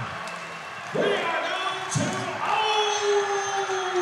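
Basketball gym crowd cheering and shouting as the game goes to overtime, with one long, slowly falling held call in the second half.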